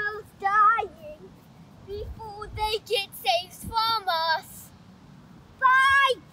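A young child singing wordlessly in short phrases with a wavering, warbling pitch, with brief pauses between them.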